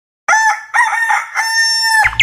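A rooster crowing once: a few short rising syllables and then a long held final note, cut off suddenly.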